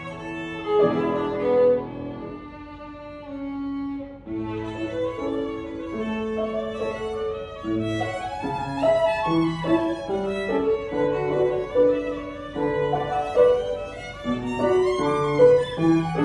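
Violin playing a melody with piano accompaniment. It softens and thins out about two seconds in, then returns to fuller playing from about four seconds.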